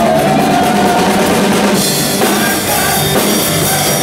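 Live rock band playing an acoustic set: a drum kit keeping the beat under strummed acoustic guitars and an electric bass.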